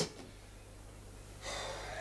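Low, steady hum, then about a second and a half in a person's sharp, audible intake of breath: a gasp.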